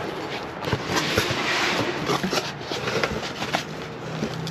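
Cardboard box flaps being handled and pulled open: papery scraping and rustling with small knocks and clicks, loudest in the middle.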